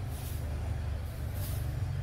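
A steady low rumble with two faint, short hisses, one near the start and one about a second and a half in.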